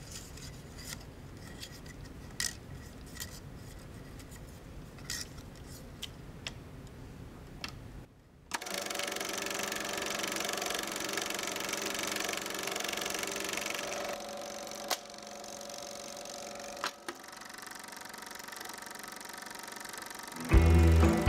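Plastic reel clicking as it is handled and fitted onto a Super 8 film projector, then the Elmo projector starts up about eight seconds in and runs with a steady mechanical whirr, getting quieter partway through, with a couple of sharp clicks.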